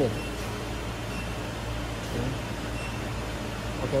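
Hydraulic power pack of a 100-ton coin press running with a steady low hum, and a few faint short beeps as values are keyed into its touchscreen panel.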